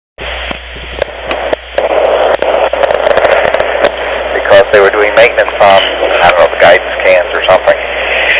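Old recording of a telephone call starting up: line hiss with clicks, then a man's voice coming through thin and hissy over the phone line from about halfway in.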